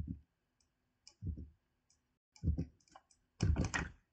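Faint clicks of a computer mouse and keyboard during editing: a few scattered soft clicks, then a quick run of them near the end.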